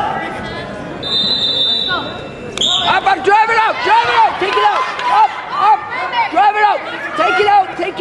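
A referee's whistle sounds from about a second in and ends in a sharp, louder blast midway, restarting the wrestling bout. A high voice then shouts short calls over and over, two or three a second.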